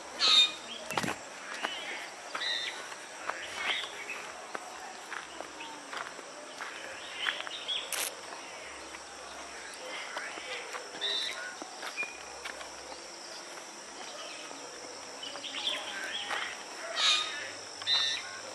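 Rural outdoor ambience: a steady high-pitched insect drone, with many short bird chirps scattered through it and now and then the light steps of someone walking on a dirt path.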